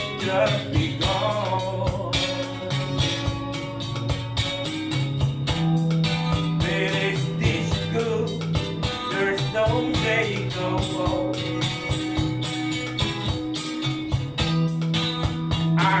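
A man singing a slow ballad while strumming guitar, over a steady beat with held bass notes behind.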